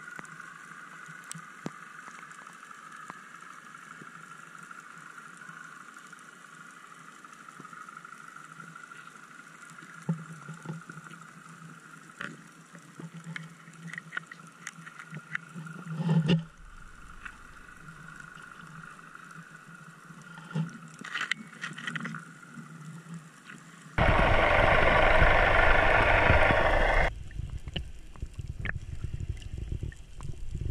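Underwater sound picked up through a diving camera's housing: a steady high hum with scattered clicks and ticks, a brief swell about halfway through, then a loud rushing noise lasting about three seconds near the end.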